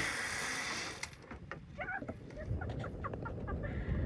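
A run of short, repeated bird calls, clucking-like, over a low rumble, starting just under two seconds in. A single click comes about a second in.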